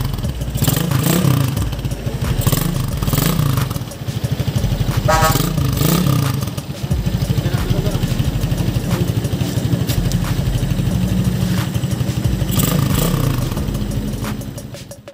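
Motorcycle engine, a Rusi 250cc engine converted into a Suzuki Raider, running with a few quick throttle blips in the first half, then settling to a steady fast idle.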